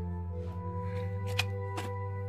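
Plastic cassette cases being handled, with two sharp clicks close together in the second half, over a soft, steady background music bed.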